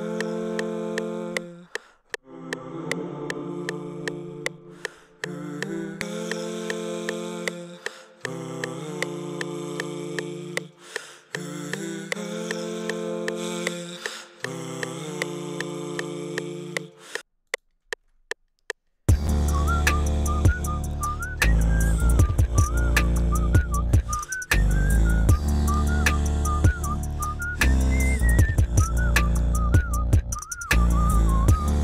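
Layered sung or hummed vocal chords, each chord held for a second or two before the next, pitch-corrected and compressed with OTT, over a regular ticking. About two-thirds of the way in a louder full beat made from the voice starts: a deep hummed bass, beatboxed drums and a high gliding vocal melody.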